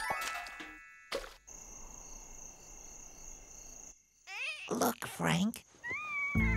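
Cartoon soundtrack: a music phrase fades out, then a faint steady high chirring night ambience over the homestead at night, followed near the end by short wordless vocal noises that glide up and down in pitch.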